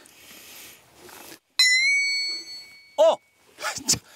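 A bright bell-like ding, an edited-in sound effect, strikes once about one and a half seconds in and rings on steadily for well over a second before fading.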